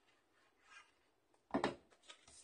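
Plastic wet-glue bottle set down on the craft mat with a short knock and rub about one and a half seconds in, after a faint rustle of card being handled.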